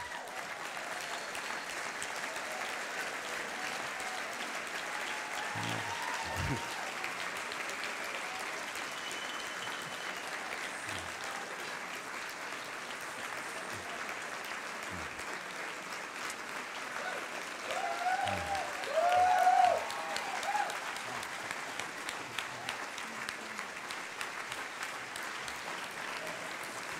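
Large audience applauding steadily and at length. Around three quarters of the way through, a few voices call out from the crowd.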